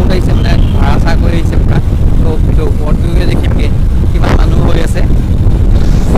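A man talking over a heavy, steady low rumble of wind buffeting and road noise inside a moving car with the window open.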